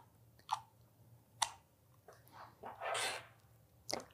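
Near silence broken by a few faint mouth clicks and a soft inhale from a narrator between sentences, the breath coming about three seconds in.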